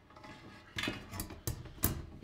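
Sheet-metal cover of a Ubiquiti UniFi network switch scraping and clicking against the metal chassis as it is slid and pressed into place. There is a short scrape, then a few sharp metallic clicks, the loudest near the end.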